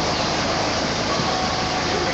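Steady, dense background noise with faint voices mixed in.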